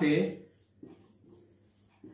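A man's voice finishing a word in the first half-second, then faint strokes of a marker pen writing on a whiteboard.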